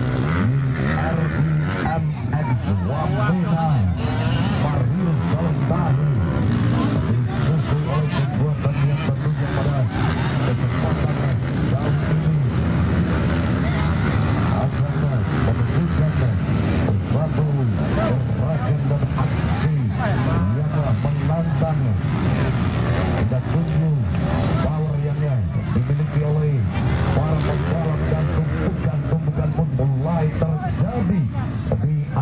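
Trail motorcycles (dirt bikes) racing around a dirt grasstrack circuit, their engines revving up and down again and again as the riders accelerate and shift.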